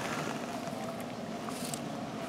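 A steady low background hum with a light hiss and a couple of faint clicks.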